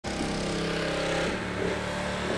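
Road traffic: a car engine running close by, over a steady rushing noise.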